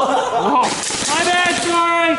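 A man's voice calling out, then holding one long steady note through the second half.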